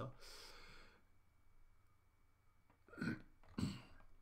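A man coughs once, a short breathy burst just after the start. Near the end come two short, louder throat or voice sounds about half a second apart.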